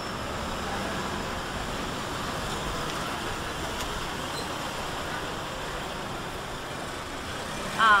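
Steady road traffic noise from cars passing on a busy road, an even rush without distinct events.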